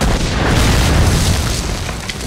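A loud explosion in a battle scene that starts suddenly and is followed by a deep rumble, which fades slowly over about two seconds.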